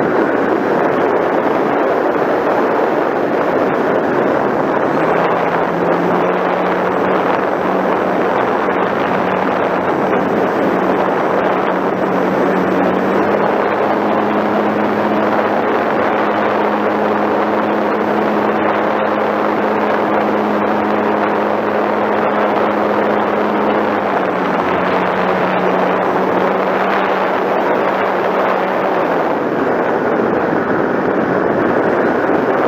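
Onboard sound of an electric RC model airplane in flight: a steady rush of air over the wing camera, with the motor and propeller hum stepping up in pitch about five seconds in and again around thirteen seconds, dropping back around twenty-four seconds and fading out near the end as the throttle changes.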